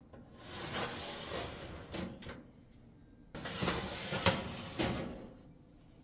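Wire food-dehydrator trays sliding along the dehydrator's rails, twice, each slide a scrape ending in a couple of knocks.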